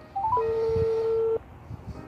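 Phone on speakerphone while a call rings out: a quick run of rising notes, then one steady ringback beep lasting about a second, as the called phone has not yet answered.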